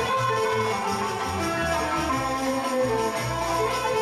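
A live Turkish classical music ensemble playing, with a double bass line, plucked and bowed strings and a jingled frame drum keeping the rhythm.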